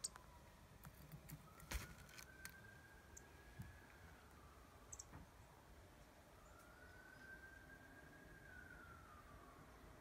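A faint, distant emergency-vehicle siren wailing, its pitch slowly rising, holding and falling twice. A few small sharp clicks and taps sound in the first half.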